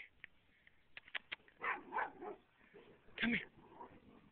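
A dog barking and yipping: a few short calls around two seconds in and a louder bark just past three seconds, after a few sharp clicks about a second in.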